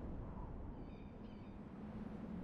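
Two short bird calls in quick succession, close together, heard over a faint, steady low background hum.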